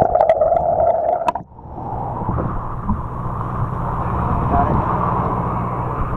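Muffled sound from a camera held underwater beside a sport-fishing boat: a steady low engine drone with water rushing and gurgling. The sound changes abruptly about a second and a half in, and after that it stays dull and muffled.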